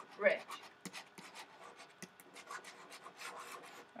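Stylus writing on a pen tablet: faint, irregular small ticks and scratchy rubs as a word is handwritten.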